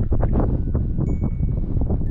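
Strong wind buffeting the microphone: a heavy, continuous low rumble with gusty rustle above it.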